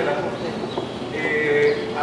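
Indistinct voices of people talking in an airport terminal waiting area, with one voice held longer a little past the middle.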